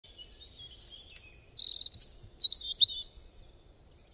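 Birds chirping and whistling in quick high notes that slide up and down, with a fast trill about a second and a half in, fading near the end.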